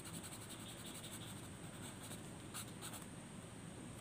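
A wooden pencil scratching on paper in quick back-and-forth shading strokes, with a couple of sharper single strokes in the second half.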